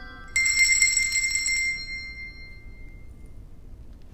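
A group of small children's handbells rung together, about a third of a second in, with a few scattered strikes just after, then ringing out and fading over about two seconds.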